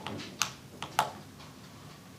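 A few short, sharp clicks or taps at a desk, three or four within about a second, the last one the loudest, against faint room noise.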